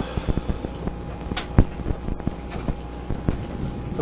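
Wind rumbling on the microphone, with irregular small knocks and taps and one sharper knock about a second and a half in.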